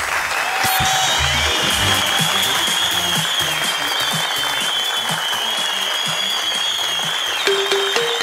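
Studio audience clapping over background music, with a high wavering tone held through most of it; the music's bass notes come back near the end.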